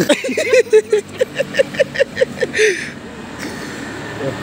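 A person laughing in a quick run of short pulses that ends just under three seconds in.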